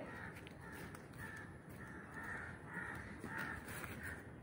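Crows cawing faintly in the background: a steady run of short, repeated calls.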